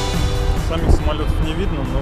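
Background music breaks off at the start, then people's voices talking over a loud, low rumble.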